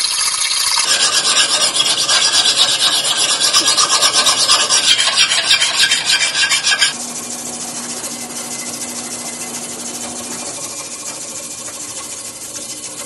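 Hand file rasping across a Cuban link chain held on a wooden stick in a vise, in quick repeated strokes. About seven seconds in it cuts off suddenly to a quieter, steadier noise with a low hum.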